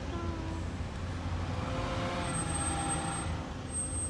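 Steady low rumble of a taxi's engine and road noise heard from inside the cab while it idles and creeps in stop-and-go traffic.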